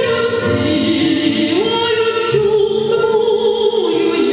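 A woman sings a Russian romance into a handheld microphone over instrumental accompaniment. Through the middle she holds one long note with vibrato.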